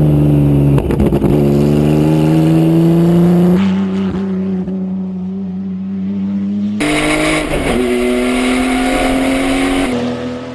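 Calsonic Nissan Skyline GT-R race car's twin-turbo straight-six engine running hard under load, its pitch climbing slowly and steadily. It drops to a quieter, duller sound a little under four seconds in, then comes back loud and bright about seven seconds in.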